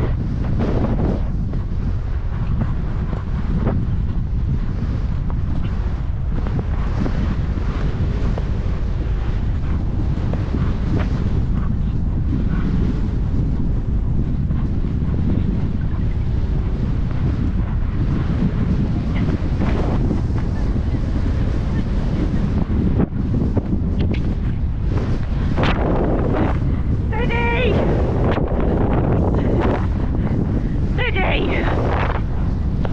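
Steady wind buffeting the microphone of a rider's camera as the horse moves at speed across open ground, a dense low rushing noise. Near the end a short wavering voice-like call cuts through it.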